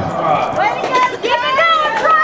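Raised voices shouting and calling out over a general murmur of voices, with several high-pitched shouts in the second half.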